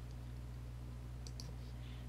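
Steady low electrical hum with a few faint computer mouse clicks a little past the middle, as a toolbar button is clicked to center text.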